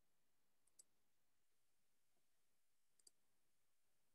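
Near silence: room tone, broken by two faint, high double clicks, about a second in and again near the end.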